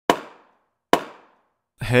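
Two sharp edited-in hit sound effects about 0.8 s apart, each dying away within half a second, marking the title text popping onto the screen. A man's voice begins near the end.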